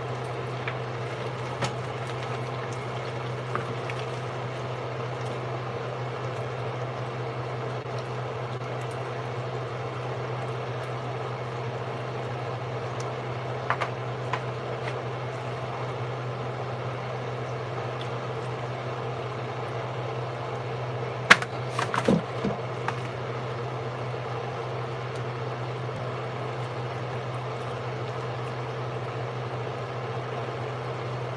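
Steady low hum throughout, with faint wet sounds of hands rubbing seasoning into raw chicken pieces in a bowl. A few short clicks and knocks break in, the loudest about 21 and 22 seconds in.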